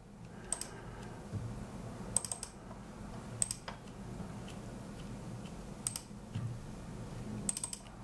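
Sparse clicks of a computer mouse and keyboard, several coming in quick pairs like double-clicks, over a low steady hum.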